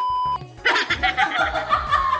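A steady high-pitched censor bleep cuts off about a third of a second in. A woman then laughs in quick bursts over background music.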